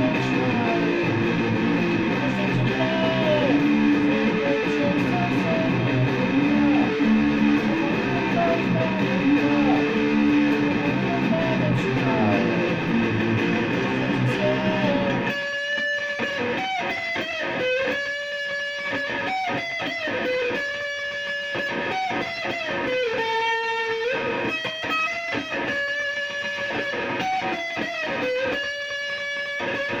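Solid-body electric guitar played with bent notes. For the first half it sounds full, with low held notes underneath; about halfway the low part drops out suddenly, leaving single held lead notes with bends.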